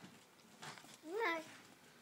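A toddler's short wordless vocalization: one pitched call that rises and then falls, about a second in. Just before it there is a brief rustle from the cardboard donut box in her hands.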